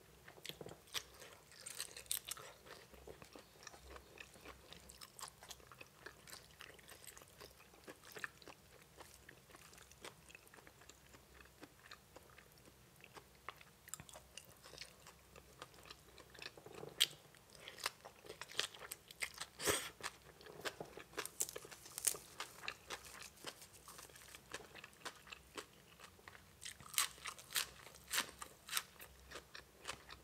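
A person chewing and biting into spicy papaya salad with raw shrimp: a run of short, crisp crunches and mouth clicks that come in clusters, busiest in the second half.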